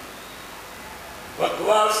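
Speech: a short pause with only a faint steady hiss, then a man's voice comes in loud about one and a half seconds in, reciting.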